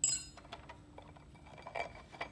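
A single sharp metallic clink with a short high ring, a steel hand tool knocking against the machine's metal parts, fading within about half a second; a few faint small handling ticks follow.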